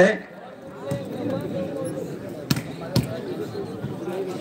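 Crowd chatter, with two sharp thuds of a volleyball striking about half a second apart, a little past the middle.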